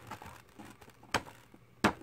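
Two sharp clicks of hard plastic Playmobil rock pieces being handled and fitted together, one about a second in and one near the end, over faint handling rustle.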